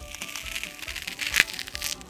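A metal spoon crunching through the frozen espresso-ice shell of a Glico Bokujo Shibori Affogato ice cream cup: a run of small crackles, with one sharper crack about one and a half seconds in. Background music plays underneath.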